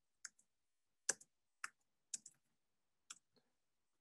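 Computer keyboard keys tapped in scattered, irregular keystrokes while a line of code is typed; faint single clicks with silence between them.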